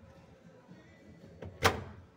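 Plastic detergent dispenser drawer of a Winia top-load washing machine pushed shut: a light click, then one sharp clack near the end as it seats.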